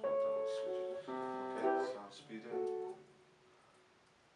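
Upright piano played without amplification: a few chords struck about a second apart, each left to ring, the last dying away about three seconds in.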